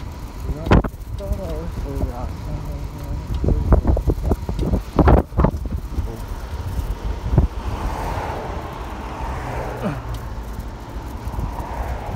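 A bicycle ridden along a rough path: steady low rumble of wind on the microphone and tyres, with sharp knocks and rattles from the bike and its front basket. A road vehicle passes close by around eight seconds in.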